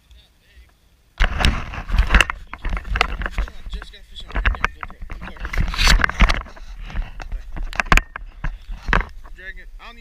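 Loud rumbling and knocking from the camera being handled and carried, with wind buffeting the microphone; it starts suddenly about a second in and eases near the end.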